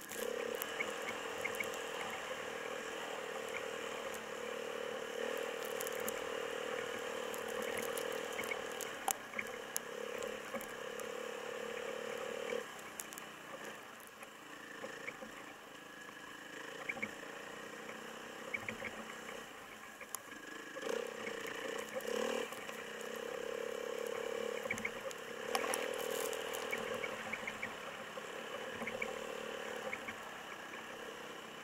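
Dirt bike engine running as it is ridden along a snowy forest track. Its note eases off for several seconds midway and picks up again about two-thirds of the way in, with small scattered clicks throughout.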